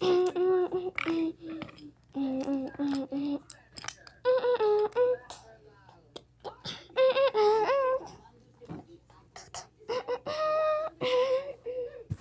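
A high voice humming a wordless tune in several phrases of held, sliding notes with short pauses between them, with scattered light clicks and taps.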